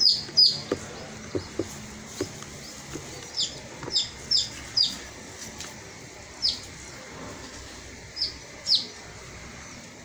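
A bird chirping: short, high notes that sweep downward, a quick run of them at the start and then single notes spaced half a second to two seconds apart.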